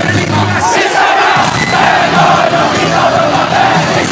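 A large rock-concert crowd loudly chanting in unison, with the band still playing more faintly underneath. The band's low bass notes drop out about half a second in, leaving the crowd's voices on top.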